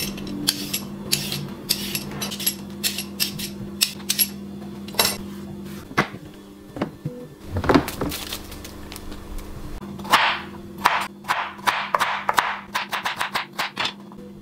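A carrot being peeled and cut on a bamboo cutting board: an irregular series of sharp knocks and clicks, with a quick run of scraping strokes near the end.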